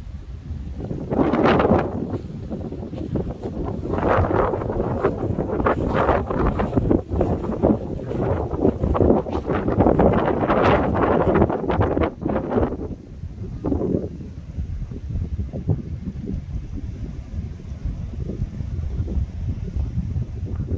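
Wind buffeting a smartphone's microphone in gusts, heaviest through the middle and easing off over the last several seconds.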